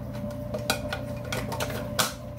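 A few light clinks and knocks of a utensil against kitchen dishes, about five spread over two seconds, over a faint steady hum.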